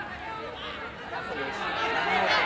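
Many overlapping voices of players and spectators at a football match calling and shouting, growing louder near the end. A single sharp knock at the very start, fitting a ball being kicked.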